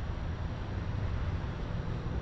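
Steady low rumble of background noise, with no distinct event.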